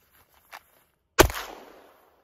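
A single pistol shot about a second in, with a short tail dying away after it. A faint click comes just before it.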